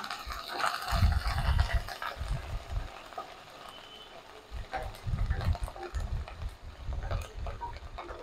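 Wooden spatula stirring green chillies, ginger and curry leaves frying in mustard oil in a kadai, scraping in two spells over a light sizzle.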